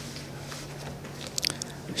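Faint clicks and crackles close to a bundle of plastic-wrapped microphones on a podium, about one and a half seconds in, over a low steady hum.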